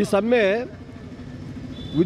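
A man speaks for under a second, then in the pause a steady low engine hum carries on beneath.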